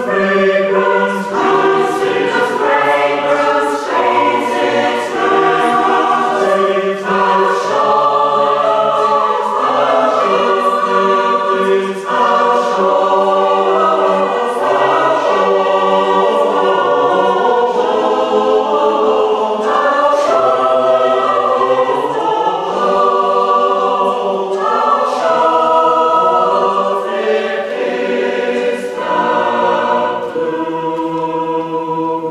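Mixed choir singing a West Gallery hymn in parts, accompanied by a cello.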